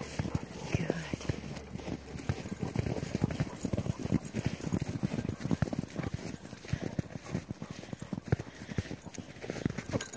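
Footsteps crunching in packed snow: a person and several dogs walking together, many quick, uneven steps.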